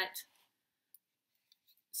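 Near silence after a woman's voice trails off, broken by a few faint, short clicks.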